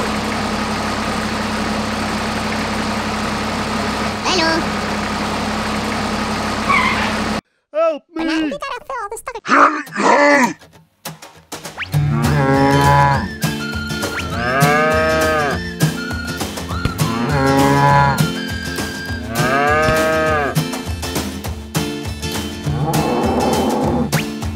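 A steady motor hum from the mini tractor for about seven seconds, then a sudden cut. Cattle then moo repeatedly, four long calls about two seconds apart, over background music.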